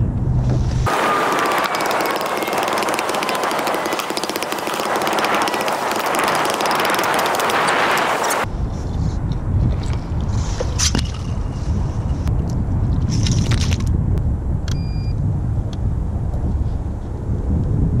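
Ice chisel chopping through thin, slushy ice: a dense crunching and crackling for several seconds that stops abruptly. Then wind rumbling on the microphone, with a few sharp knocks and splashes as ice chunks and slush are scooped out of the hole.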